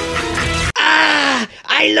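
Dramatic background music that cuts off abruptly less than a second in. A voice then makes one long drawn-out vocal sound that falls in pitch, and starts to speak near the end.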